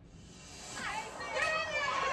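Voices from a played reality-TV preview clip, with music underneath, rising in level from about half a second in.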